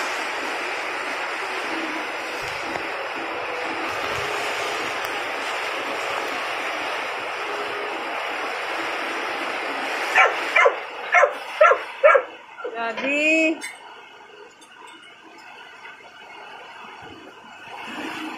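Heavy typhoon rain pouring steadily. About ten seconds in, a dog barks five times in quick succession, then gives a short whine, and after that the rain sounds much quieter.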